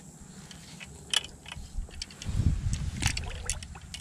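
Light water splashing and dripping at the surface beside a small boat, with a few sharp clicks. A low rumble builds from about halfway through.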